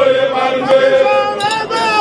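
A group of voices chanting a song together, with long held notes.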